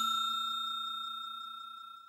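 Notification-bell chime sound effect ringing out: a clear high tone with a few lower and higher overtones, fading away evenly.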